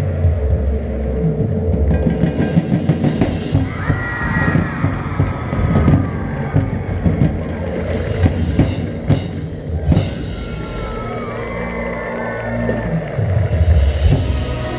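High school marching band playing on the field: sustained low brass chords under drum and cymbal hits, with higher melodic lines that bend in pitch about four seconds in and again around ten seconds.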